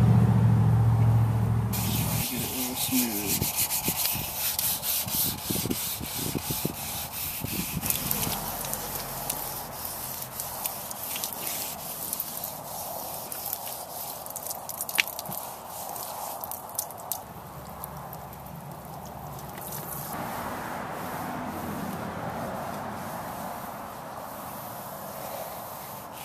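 Fine-grit sandpaper rubbed back and forth by hand over a primed patch on a plastic golf cart body panel, in quick scratchy strokes. The sanding stops about three-quarters of the way through, leaving a softer steady hiss.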